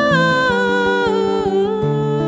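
A woman's voice singing a held, wordless line over acoustic guitar, the melody stepping down in pitch about a second and a half in.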